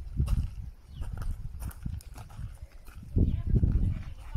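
Footsteps tapping and scuffing on bare sloping rock, mixed with heavy low rumbling bursts that come and go.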